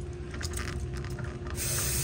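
R-410A refrigerant gas hissing out of a loosened hose fitting as the recovery hoses are purged of air. The hiss starts suddenly about one and a half seconds in and is loud and steady.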